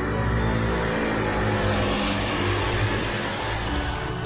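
A motor vehicle passing, its noise swelling to a peak about halfway through and then fading, over background music.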